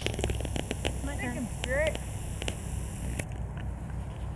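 A camcorder zoom motor whirs with a run of small clicks and stops abruptly about three seconds in. Two short rising calls sound about one and two seconds in, over a steady low rumble.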